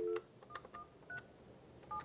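Dial tone of an Avaya J139 desk phone, heard over its speakerphone, cut off by the first key press. Then five short touch-tone (DTMF) beeps follow at uneven intervals as the extension 21137 is keyed in.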